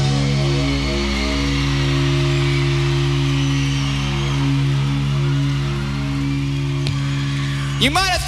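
A rock band's final chord ringing out on electric guitar and bass, held steadily, with a crowd cheering underneath. A quick rising glide cuts in just before the end.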